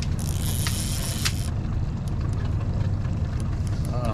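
Steady low hum of a boat's outboard motor running. A brief hiss and a couple of sharp ticks come in the first second and a half.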